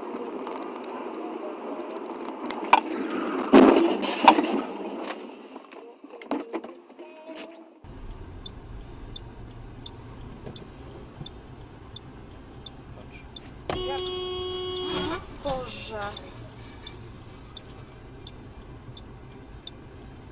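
Dashcam traffic audio. About three seconds in there is a run of sharp knocks, the loudest sounds here. After a cut comes steady road noise with a light ticking about twice a second, and a car horn sounding for about a second and a half near the middle.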